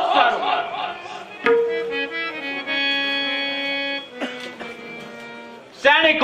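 Stage accompaniment on a reedy keyboard instrument with a harmonium- or accordion-like tone. A sharp knock about a second and a half in opens a held chord; about four seconds in it moves to a lower, quieter chord that fades out before the end.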